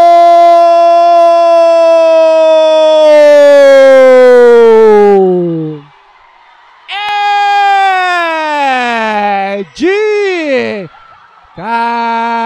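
A male sports commentator's long, drawn-out 'gol' cry, held on one pitch for about seven seconds and then falling away, followed by two shorter shouts that also drop in pitch.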